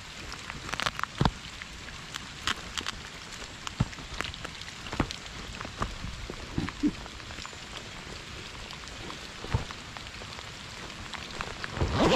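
Rain falling as a steady, even hiss, with irregular sharp taps scattered throughout.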